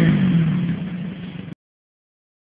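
A quad's engine running as the quad pulls away, its note easing down and fading, then cutting off abruptly about a second and a half in.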